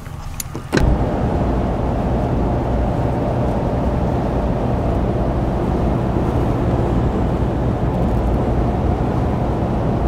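Ram Rebel pickup truck driving at road speed, heard from inside the cab: a steady drone of engine and tyre noise. It cuts in abruptly under a second in, after a couple of clicks.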